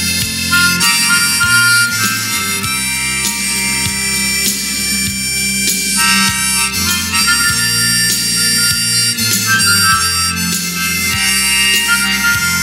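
Harmonica playing a melodic solo of sustained notes and chords, changing every second or two, over an accompaniment with a low, steady bass line.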